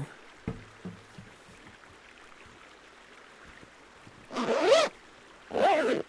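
A bag's zipper pulled closed in two quick strokes near the end, the radio just packed inside. Before that come a few soft knocks of gear being handled, over the faint flow of a river.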